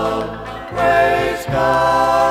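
Male southern gospel quartet singing sustained chords in close harmony, the chords shifting twice, on a 1970s vinyl LP recording.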